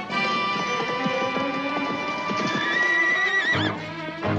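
A horse whinnies, a rising call that trembles and breaks off near the end, with hoofbeats, over orchestral film score.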